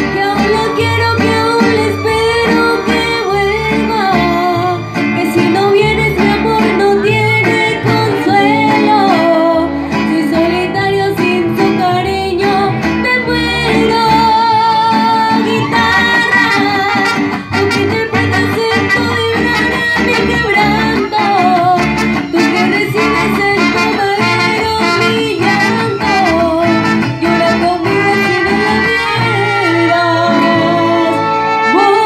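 Live mariachi band: a woman sings a melody with wavering vibrato over violins, strummed vihuela and guitars, and low bass notes.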